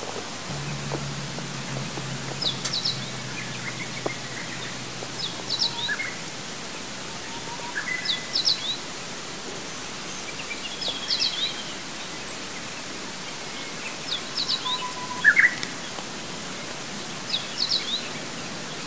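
A songbird singing a short phrase of quick high notes, repeated roughly every three seconds, over a steady hiss.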